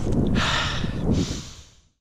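A man taking two long, deep breaths, the first about half a second in and the second just after a second in, over a low wind rumble on the microphone. The sound fades out near the end.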